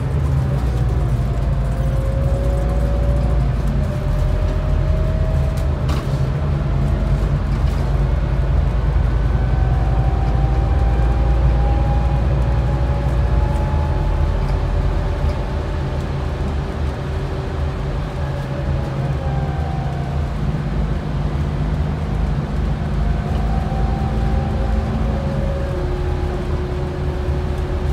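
A Scania N280UD double-decker bus under way, heard from inside the passenger cabin. Steady low engine and road rumble runs with thin whining tones that slowly rise and fall in pitch as the bus speeds up and eases off. A single sharp click comes about six seconds in.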